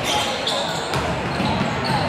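Basketball game in a gym: sneakers squeaking on the hardwood court in short high squeals, several times, and a basketball being dribbled, over the voices of players and spectators.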